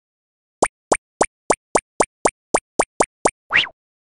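Cartoon pop sound effects for an animated logo: eleven quick plops in a steady run, about four a second, ending in one longer pop that slides up in pitch.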